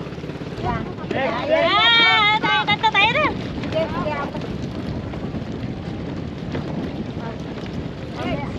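Steady wind rumbling on the microphone. People's voices chatter briefly about two seconds in, then fade out.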